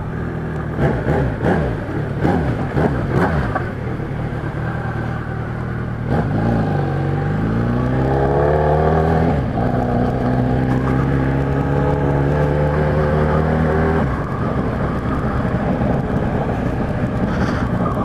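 Kawasaki Z1000's inline-four engine through a newly fitted four-into-one exhaust, under way at moderate revs. About six seconds in it accelerates hard, the note climbing. There is a short dip at a gear change, then it pulls on until the throttle closes about fourteen seconds in; the new exhaust is called a crazy noise.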